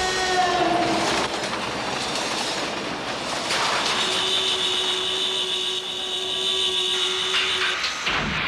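Cartoon sound effect of a train rolling along the rails with a steady rumble and clatter. A horn note drops in pitch in the first second, and a long steady horn note sounds from about halfway in until just before the end.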